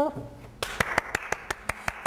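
Hand clapping, a steady run of about five claps a second, starting about half a second in.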